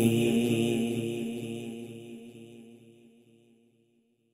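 A sung devotional chant (naat) holding its final note and fading out to silence over about three and a half seconds.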